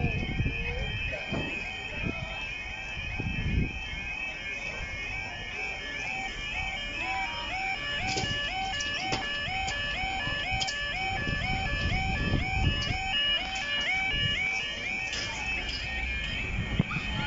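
Level-crossing yodel alarm on the barrier post sounding as the crossing closes: a warbling two-tone call repeating about twice a second.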